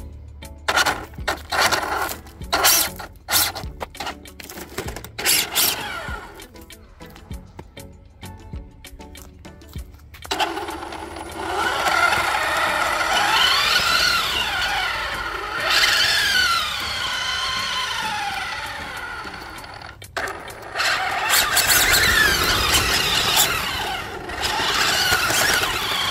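Toy-grade 1/8-scale RC car's electric motor and gears whining under throttle. The car now has a pinion gear of the correct pitch. There are short blips of throttle at first; about ten seconds in come longer runs, the whine rising and falling in pitch twice, and another run near the end.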